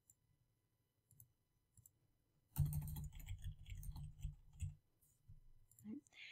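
Computer keyboard typing: a quick run of keystrokes lasting about two seconds, starting a couple of seconds in.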